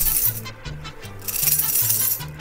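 A ring of metal keys jingled in two bursts, one at the start and a longer one from just past the middle to the end, over background music with a repeating bass line.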